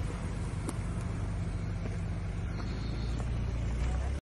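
Car engines running slowly nearby, a steady low rumble that grows slightly louder near the end, with a few faint clicks.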